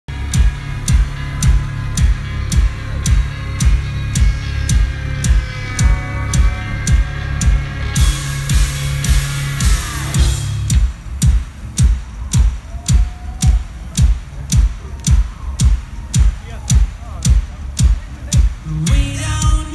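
Live rock band music with a steady kick-drum beat of about two a second under a held low bass. A bright noisy swell and a falling slide come around eight to ten seconds in, then the bass drops out, leaving the beat.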